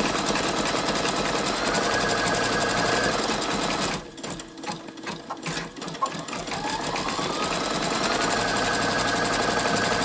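Brother Innovis 2800D embroidery machine stitching out a design at a steady rapid rate. About four seconds in it drops away for roughly two seconds, with a few clicks, then winds back up to full speed with a rising whine.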